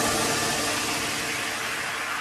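A wash of white noise with faint held tones, slowly fading after the beat of an electronic dance track stops: a noise-sweep or reverb tail in the music.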